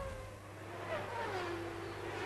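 Formula One car engines, heard faintly, their note falling in pitch twice and settling near the end, over a low steady hum.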